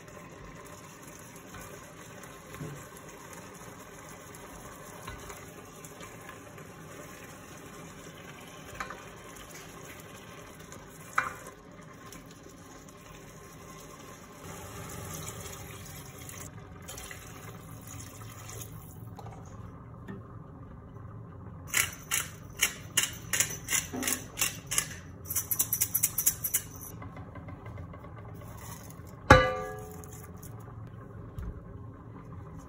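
A spoon stirring tomato sauce in an enamelled cast-iron pot, with a few light knocks against the pot. About halfway through, water is poured into the pot, and later comes a run of rapid clicks and taps. One sharp knock sounds just before the end.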